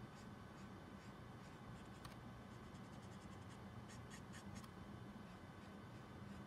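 Faint, soft strokes of a Copic Sketch marker's brush nib (YG61) over blending card, with a quick run of short strokes in the middle, over a low steady hum.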